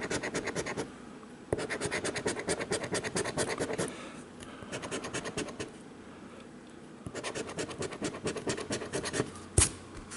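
A coin scratching the latex coating off a paper scratch-off lottery ticket in quick back-and-forth strokes, in three or four spells with short pauses between. A single sharp click comes near the end.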